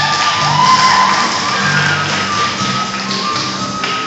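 Jazz band playing, with long held notes over a steady low bass line.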